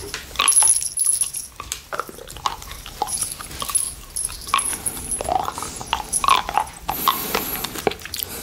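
Close-miked wet mouth sounds of licking and sucking on a hard candy cane: irregular smacks, slurps and clicks, with a few brief squeaky sounds.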